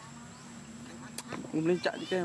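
A flying insect buzzes with a faint, steady hum. About one and a half seconds in, short pitched vocal sounds cut in, louder than the buzz.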